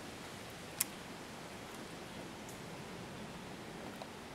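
PSE Tac-15 crossbow firing: one short, sharp snap about a second in, quiet for a crossbow, over a faint steady hiss.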